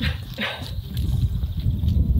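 A small dog making two short sounds, about half a second apart, over a low rumble of wind on the microphone.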